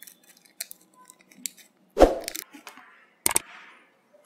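Cable connectors and wiring being handled and plugged in on the sheet-metal back of an LED TV: small scattered clicks, then a sharp knock about halfway through and another near the end.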